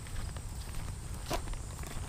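Footsteps of a person walking along a narrow dirt path through tall grass and weeds, over a steady low rumble, with one sharper tick a little past halfway.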